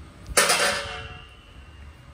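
A single sudden metallic clang about half a second in, fading quickly with a faint high ringing tone, as the sheet-metal casing of a solar inverter is handled.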